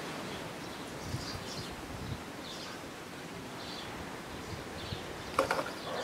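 Quiet outdoor ambience: a steady background hiss with a few faint, high, distant bird chirps scattered through it.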